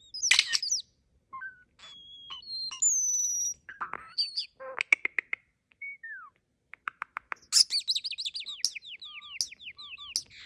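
European starling singing a varied, mechanical-sounding medley of whistles, clicks and rattles, ending with a quick run of falling notes.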